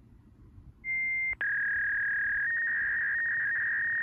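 A loud, steady electronic beep tone. A short beep comes about a second in, then after a brief click and break a longer beep at a slightly lower pitch runs for about three seconds.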